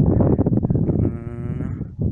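Wind rumbling on the microphone, then about a second in a drawn-out, wavering call lasting just under a second.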